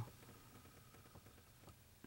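Near silence: faint background hiss with a couple of very faint ticks.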